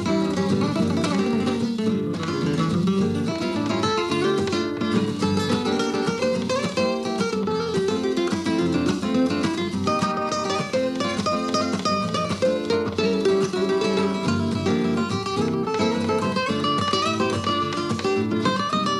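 Two cutaway flamenco guitars with cypress backs and sides and spruce tops, played together in a duet. The piece is a continuous run of busy plucked melody over chordal accompaniment, in a flamenco-flavoured Latin style.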